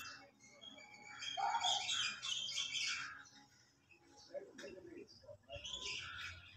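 Faint outdoor ambience: birds chirping in short calls, with faint voices in the background.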